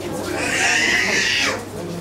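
A single shrill, high-pitched animal call lasting about a second, cutting off sharply, over background voices.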